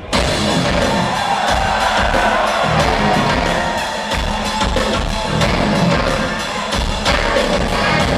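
Rock band playing live in a concert hall, heard from the audience: distorted electric guitars, bass and drums at full volume. The whole band comes in together with a hit right at the start.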